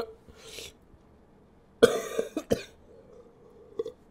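A man coughing hard about two seconds in, a short burst followed by a second cough, after a brief vocal sound and a breath at the start: a reaction to the burn of a spoonful of hot sauce.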